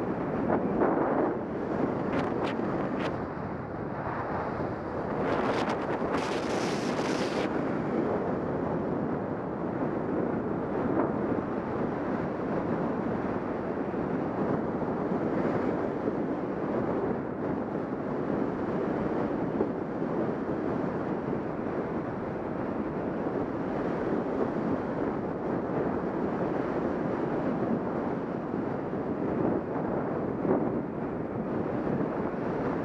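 Airflow rushing over the camera microphone during a fast speedwing flight: a steady, even rush of wind noise. It turns briefly hissier about two seconds in and again around six seconds in.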